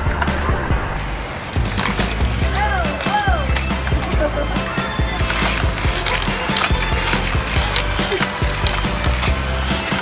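Die-cast toy cars rolling and clattering on plastic Hot Wheels track, with frequent small clicks and knocks, over a steady low hum.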